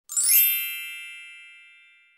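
Chime sound effect: a cluster of high ringing tones struck once, fading away over about two seconds.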